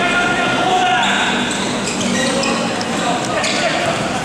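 Indoor basketball game in a gym hall: players' voices calling out over short, high sneaker squeaks on the court and a basketball bouncing, all echoing in the hall.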